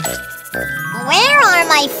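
A child-like cartoon voice with a swooping, questioning rise and fall in pitch, beginning to ask "Where are my friends?", over light chiming jingle tones from the children's song backing.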